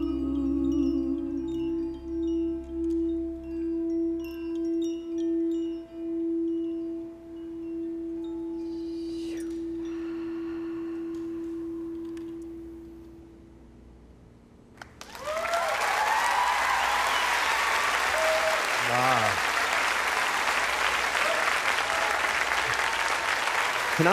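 A singing bowl rings one steady tone with a slow, even wobble in loudness, with faint high chimes tinkling over it, and fades away about halfway through. About fifteen seconds in, an audience bursts into applause and cheering.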